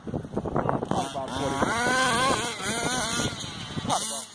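Small nitro-fuelled engine of a remote-control car running as the car drives across a field, heard together with people's voices.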